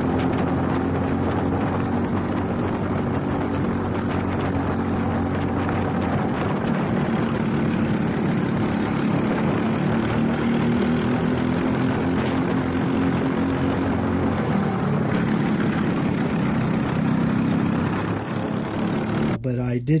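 Briggs & Stratton LO206 single-cylinder four-stroke kart engine at racing speed, heard from an onboard camera. Its pitch rises and falls as the kart goes through the corners. The sound cuts off abruptly near the end.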